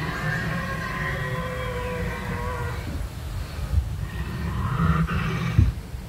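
Recorded dinosaur roar played from an animatronic dinosaur: one long pitched call falling slightly over about three seconds, then a shorter, higher call about five seconds in, over a steady low rumble.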